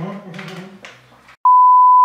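A single loud, steady, high-pitched censor beep about half a second long near the end, edited in over a spoken word.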